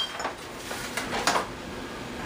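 Metal baking pans clanking against each other and the stovetop as a pan of roasted spaghetti squash is set down: a sharp clank at the start, then a few lighter knocks and scrapes.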